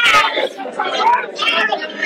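Voices of several people talking at once, with a loud voice at the very start giving way to quieter, overlapping chatter.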